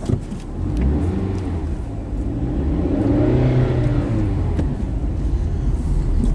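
Car engine heard from inside the cabin as the car pulls away and accelerates. Its pitch rises with the revs to a peak about three and a half seconds in, then eases off.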